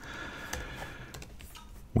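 A few soft keystrokes on a computer keyboard as a short line of code is typed.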